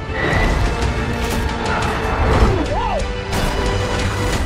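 Loud dramatic trailer music with crashing sound-effect hits, a downward-sweeping whoosh in the middle and a heavy low impact about two and a half seconds in.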